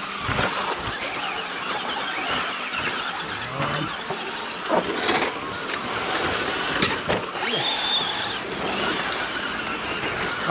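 A pack of Traxxas Slash electric RC short-course trucks, a mix of brushed and brushless motors, racing on dirt: motors and gears whine as they accelerate and tyres scrabble on the dirt, with a few sharp knocks. A steady high whine stands out for about a second late on.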